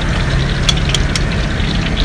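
A low, steady engine rumble, like a vehicle idling, with a few sharp clicks about a second in.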